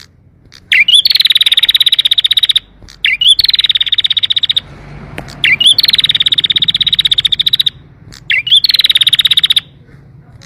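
Domestic canary singing in fast trills: four bursts of rapid repeated chirps, each opening with a short looping note and lasting one to two seconds, with short pauses between.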